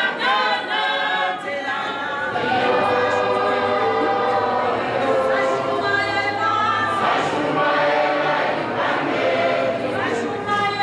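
A choir of many voices singing a cappella, a gospel-style song with long held notes.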